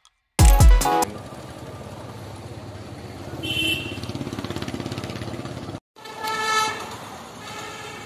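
A burst of song with deep bass hits cuts off about a second in, giving way to outdoor street noise: a vehicle engine running with a steady pulse and a short high horn toot.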